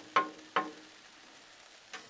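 Metal spatulas clinking against the steel top of a Blackstone griddle: three ringing taps in quick succession at the start, then only faint background until a small click near the end.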